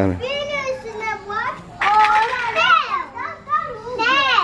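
Young children's high-pitched voices calling out and chattering, several at once, louder from about halfway through.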